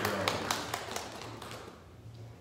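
A quick, irregular run of light, sharp taps that thins out and stops a little over a second in.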